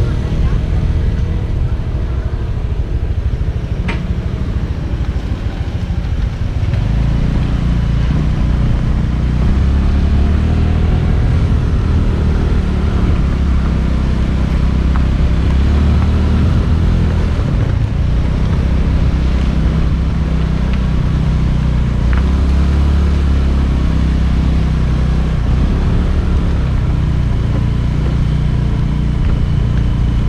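Motor scooter engine running steadily under way, heard from the rider's position. It gets louder and fuller in the low end from about seven seconds in.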